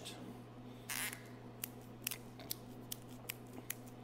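A natural cork being twisted off the metal spiral of a corkscrew: a short rasp about a second in, then a series of small sharp clicks and creaks.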